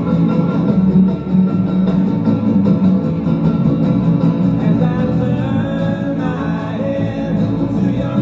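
Live acoustic band playing with a steady beat, guitar strummed over an upright bass, heard from within the audience. Sung notes come in over the instruments in the second half.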